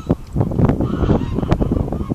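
Wind buffeting the microphone, with a series of short honking calls, goose-like, over it.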